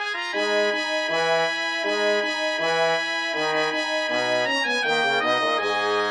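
Brass quintet playing: the trumpets sound repeated short notes of a minor-key melody over detached horn and trombone notes, with the tuba silent. Near the end the trombone steps down through a quick descending run.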